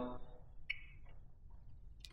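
Quiet room with one faint click about two-thirds of a second in and a smaller tick shortly after, from the motorcycle's ignition key switch being handled between turning the bike off and back on.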